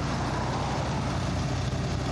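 Bus engine idling close by, a steady low drone.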